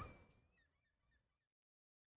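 Near silence with faint, scattered bird calls. The calls stop dead about one and a half seconds in, where the track goes completely silent.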